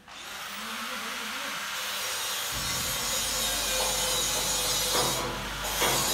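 Hydraulic car parking lift's power unit running: a loud hiss that starts suddenly, joined about two and a half seconds in by a low steady motor hum, as the lift raises its platform.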